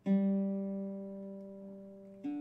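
Archtop guitar being tuned: a single low open string plucked once and left to ring, fading away.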